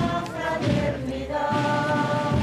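A group of voices singing a slow religious hymn together, holding long notes that step from one pitch to the next.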